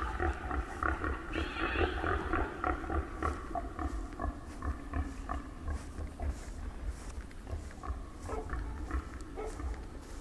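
Pig-like calls from an unseen animal, coming irregularly, over a steady low rumble.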